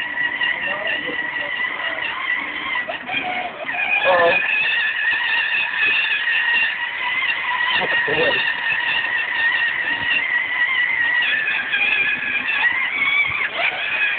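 Children's battery-powered Power Wheels ride-on ATV being driven, its electric drive motors and gearboxes giving a steady high whine that wavers slightly in pitch.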